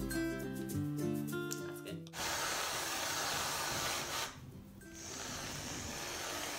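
Background music for about the first two seconds, then a Reddi-wip aerosol whipped-cream can spraying onto a cup of hot chocolate: a loud hiss for about two seconds, a brief break, then a second hiss near the end.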